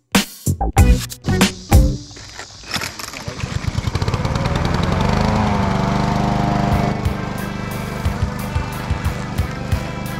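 Small gasoline lawn-care engine starting: rapid firing pulses that speed up from about three seconds in, then the engine running and revving up around five seconds, settling slightly quieter after about seven seconds. Beat music is heard at the start.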